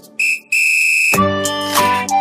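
A steady, high whistle tone, a brief blip and then one held note of about half a second that cuts off, in a break in the background music. The music starts again just after a second in.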